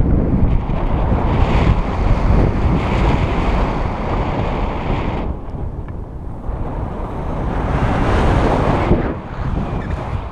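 Wind rushing and buffeting over an action camera's microphone in paraglider flight. It eases off about halfway through, builds again, and drops shortly before the end.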